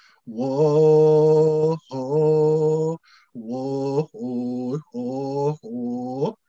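A man singing a chant without accompaniment: two long held notes, then four shorter ones with brief breaths between, the last rising in pitch. The hand drum he holds is not struck.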